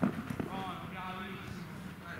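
A football struck on artificial turf, a sharp kick or knock right at the start and another soon after, then a man's drawn-out shout lasting about a second.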